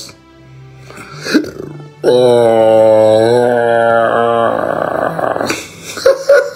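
Background music with one long held note that comes in about two seconds in and lasts about two and a half seconds, followed by a short stretch of hiss.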